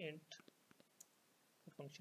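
A handful of faint, separate clicks from computer keyboard keys being pressed while code is entered, with short bits of speech at either end.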